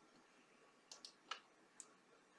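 Near silence broken by a few faint clicks of a computer mouse about a second in.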